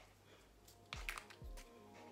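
A few light clicks and taps about a second in as a small peppermint essential-oil bottle is opened and handled, with soft background music starting at the same point.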